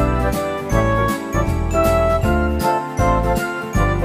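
Background music: bright, bell-like chiming notes over a bass line that steps from note to note.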